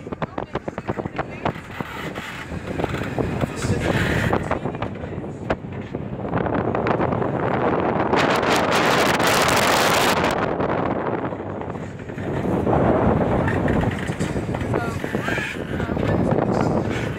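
Wind buffeting the microphone and water rushing past the hull of a sailing catamaran under way in a choppy sea. Rapid crackling buffets fill the first few seconds, then a louder rushing hiss swells about eight to ten seconds in and eases off.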